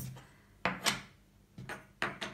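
Wooden memory-game discs being picked up, turned over and set down on a wooden table: a few light wooden knocks.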